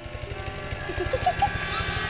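Electric hair clippers running and cutting hair, with a fast, even low pulsing.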